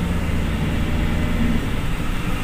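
A bus's engine and road noise heard from inside the passenger cabin: a steady low drone while the bus drives along the highway.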